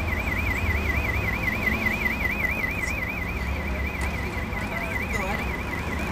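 An electronic alarm sounding in the street: a continuous high warbling tone that rises and falls about four times a second, over a low rumble.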